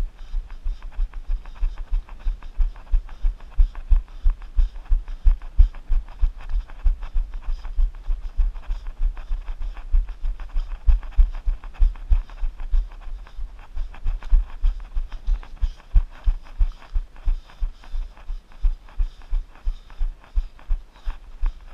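A runner's footfalls heard as steady low thuds, about three strides a second, carried through a body-worn camera.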